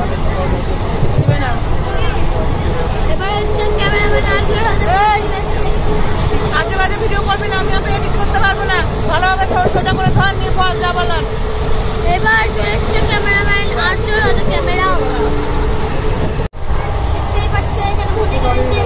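Passengers' voices talking over the steady low rumble of a moving train carriage. The sound cuts out for an instant near the end.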